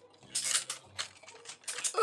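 Ratchet joints in the shoulder of a plastic Transformers action figure clicking in a quick, uneven series as the shoulder is rotated.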